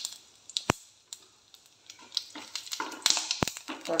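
Cumin seeds, dried red chillies and whole spices crackling in hot ghee and oil in a steel frying pan: scattered pops and ticks with two sharper clicks, a sign that the tempering (tadka) has crackled and is ready.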